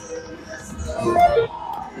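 Aristocrat Dragon Link Panda Magic slot machine playing its plucked-string spin music while the reels turn and stop on a losing $5 spin.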